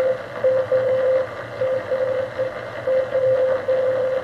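Morse code (CW) signal received on a Heathkit HR-10B vacuum-tube receiver on the 40-meter band. A single beeping tone is keyed on and off in dots and dashes over steady band hiss, played through an external speaker.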